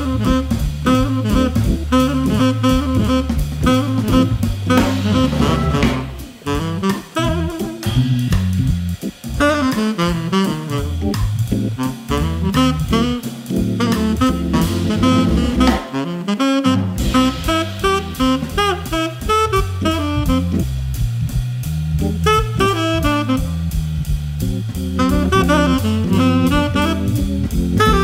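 Jazz trio in full swing: tenor saxophone playing a melodic line over organ and a swinging drum kit.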